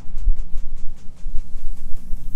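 Irregular low rumbling and rubbing with faint soft clicks as hands work a hair gloss through wet hair at a shampoo bowl.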